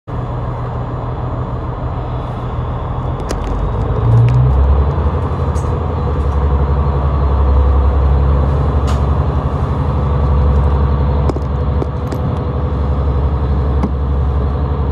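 Inside the cabin of a JR Central HC85 series hybrid diesel train pulling out of a station: a low engine drone steps up about four seconds in and holds steady as the train gathers speed, with a few faint clicks.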